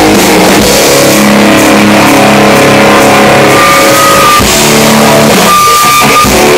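Live rock band with distorted electric guitar holding long sustained chords, played loud. A high held tone rings out briefly about four seconds in and again near the end.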